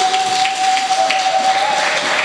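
Audience clapping and cheering in a hall, with a single steady ringing tone held over it that stops near the end.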